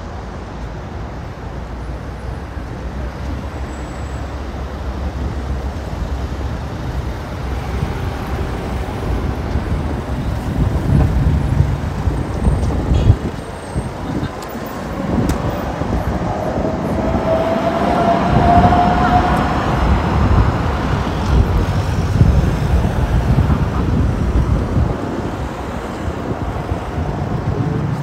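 City road traffic: a steady rumble of cars on the street that grows louder, with a vehicle passing close about two-thirds of the way through, its pass carrying a slowly rising whine.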